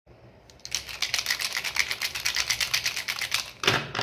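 Plastic felt-tip sketch pens clattering onto paper as they are laid down: a fast run of light clicks, about ten a second, then one louder knock near the end.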